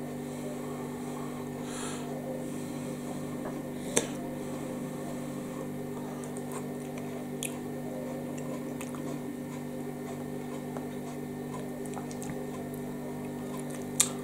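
A freezer's steady electrical buzz, a hum of several tones held level throughout, with faint chewing and a sharp click about four seconds in.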